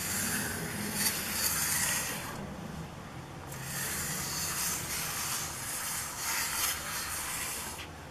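A cardboard toilet-paper-roll ring pushing a plastic bottle cap across a sheet of paper: a dry rubbing scrape in long strokes, with a short lull about two and a half seconds in.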